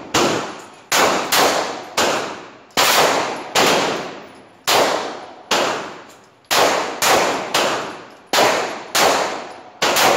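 A semi-automatic pistol fired in a steady string on an indoor range: about fourteen shots at an uneven pace of one every half second to a second, each followed by a short ringing echo off the range walls.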